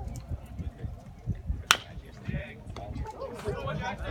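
Spectators' voices murmuring in the background, with a single sharp crack of the baseball in play a little before the middle.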